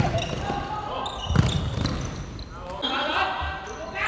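Futsal players calling out to each other during play on a wooden indoor court, with a sharp ball strike about one and a half seconds in and the ball bouncing on the floor.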